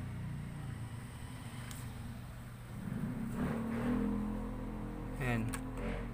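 A low, steady droning hum that swells about halfway through, with a brief voice sound near the end.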